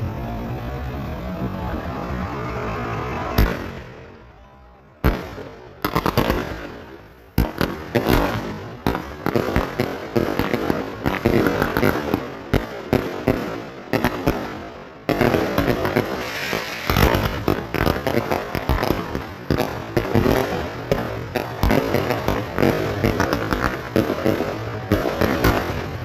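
Consumer firework cakes going off: single sharp bangs about three and five seconds in, then a fast, irregular run of bangs and crackles that grows denser after about fifteen seconds.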